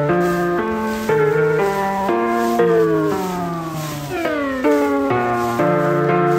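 Piano piece played from MIDI and put through a lo-fi tape-effect plugin, sounding chords and melody notes. Midway through, the pitch of the notes sags downward in a tape-warble slowdown, then snaps back to pitch.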